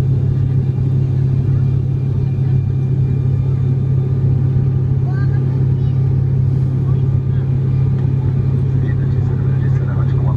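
Steady low drone of an airliner cabin in flight: engine and airflow noise heard from inside the cabin. Faint voices come through now and then, about halfway through and near the end.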